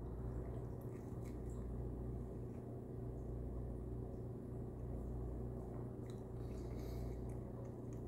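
Faint mouth sounds of someone chewing a coffee-dunked cookie and sipping coffee from a mug, heard over a steady low hum.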